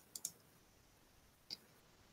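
Near silence, broken by a few faint, short clicks: two close together early in the pause and one more about a second and a half in.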